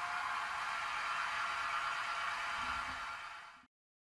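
Steady background hiss with a faint hum, the recording's room tone, with a soft low thump near the end. It fades out about three and a half seconds in, leaving silence.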